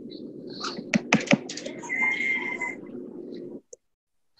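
Several sharp clicks and taps about a second in, over a low rustle, with a brief thin squeak about two seconds in; the sound stops abruptly near the end.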